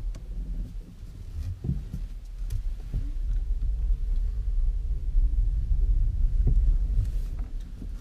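Low road and tyre rumble inside the cabin of a moving Nissan Leaf electric car. It grows louder as the car picks up speed, with a few short knocks over bumps in the road.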